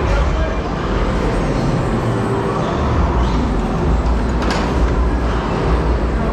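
A loud, steady rumbling din with a heavy low end: camera handling and clothing rubbing on the mic while a climbing harness is fastened. A sharp click comes about four and a half seconds in.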